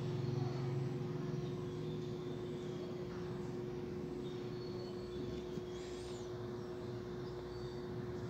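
Steady low background hum with a constant mid-pitched tone over a faint rumble; a louder low drone fades out about a second in.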